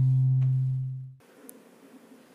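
The last low note of an acoustic guitar piece rings on and slowly fades. It is cut off abruptly about a second in, leaving only faint room noise.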